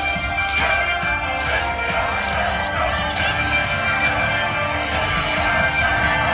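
Loud, upbeat yosakoi dance music playing, with sharp clacks on the beat about once a second, as from naruko wooden clappers.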